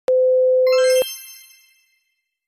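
A steady test-card beep tone lasting about a second that cuts off abruptly, overlapped near its end by a bright chime sound effect that rings out and fades over about a second.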